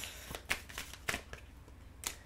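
A deck of tarot cards being shuffled by hand: a run of light, quick card slaps in the first second or so, thinning out and fading after that.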